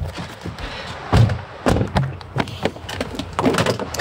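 A string of knocks and thuds, the loudest about a second in, as the motorhome's cab door is opened and shut and things are handled.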